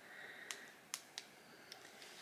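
A few faint, separate clicks of long fingernails tapping on a smartphone screen.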